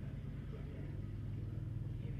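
Steady low hum with no distinct events.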